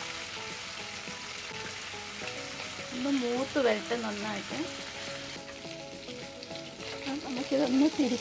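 Dried mackerel pieces frying in hot oil in a nonstick wok: a steady sizzle full of fine crackles, with a spatula stirring and scraping through the fish. A voice is briefly heard about three seconds in and again near the end.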